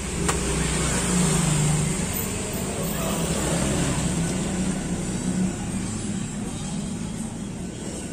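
A road vehicle's engine running steadily nearby, with one sharp chop of a machete into a young coconut shortly after the start.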